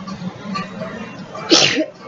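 A woman sneezes once, sharply, about one and a half seconds in, over a faint low hum.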